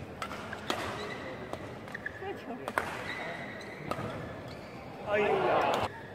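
Badminton rally heard in an arena: several sharp racket strikes on the shuttlecock about a second apart, with short squeaks of shoes on the court mat. It ends with a loud burst of shouting and cheering near the end as the point is won.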